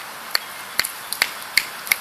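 About six short, sharp clicks at uneven intervals over a steady faint outdoor hiss.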